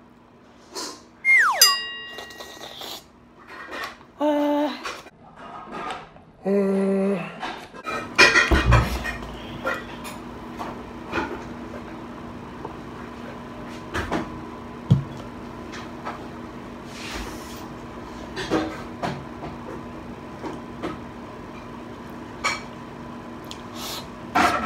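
Clinks and knocks of a glass milk bottle and dishes being handled on a table, with a heavy thump about eight seconds in. Earlier there is a brief falling tone and two short hummed vocal sounds from a person.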